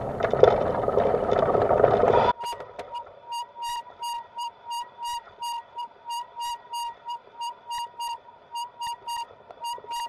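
Loud rumble of road and wind noise from the moving bike that cuts off abruptly about two seconds in, followed by a high-pitched squeal-like tone pulsing evenly about two and a half times a second.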